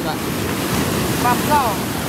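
Surf washing in over a shallow beach, a steady rushing of breaking waves and foam, with wind on the microphone.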